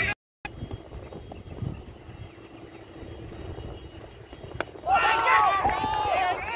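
Quiet open-air cricket ground, then about four and a half seconds in a single sharp knock of the cricket ball, followed at once by several fielders shouting loudly in an appeal.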